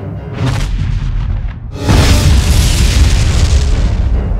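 A film sound-design boom: a short whoosh about half a second in, then just before two seconds in a sudden loud boom like an explosion that rolls on to the end. It is laid over an orchestral film score.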